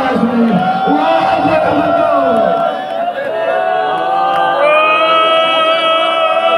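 Men's voices wailing and weeping aloud in mourning, the cries rising and falling at first, then several voices holding long, steady cries together for the last few seconds.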